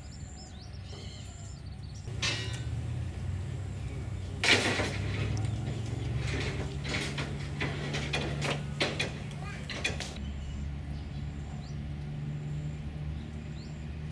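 Hand tools working on a steam locomotive's valve gear and crosshead. A loud rasping burst comes about four seconds in, followed by a run of sharp metallic taps and clanks, all over a steady low mechanical hum.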